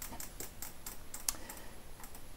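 A few faint, irregular light clicks of fingers tapping on a phone's touchscreen.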